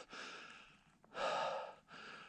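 A man breathing out heavily, a breathy sigh about a second in, with a fainter breath just before it.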